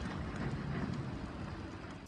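Burning waste heap giving a steady noisy crackle over a low rumble, fading down near the end.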